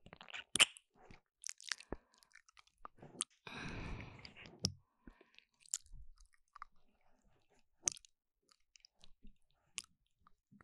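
Close, wet ASMR mouth sounds made directly on a binaural microphone's ear ('ear eating'): scattered lip smacks and clicks, with a longer, denser stretch of mouth noise about three and a half seconds in.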